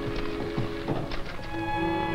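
Manual typewriter keys clacking in irregular strokes over orchestral film music. About one and a half seconds in, the typing stops and the music moves to a new held chord.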